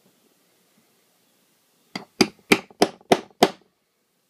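Small hammer striking a metal leather hole punch to knock a hole through leather: six quick taps about a third of a second apart, starting about two seconds in, the first one lighter.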